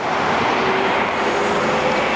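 Steady road traffic noise: tyre noise and the faint hum of engines from passing vehicles.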